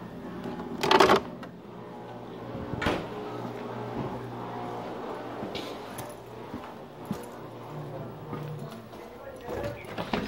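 Rustling and knocks from a phone being handled close to its microphone, with a loud bump about a second in and a smaller one near three seconds, over a steady low hum and a muffled voice in the background.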